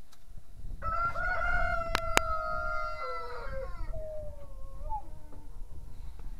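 A rooster crowing once: one long call of about three seconds that holds its pitch, then falls and trails off. Two sharp clicks sound in the middle of the crow, over a low rumble.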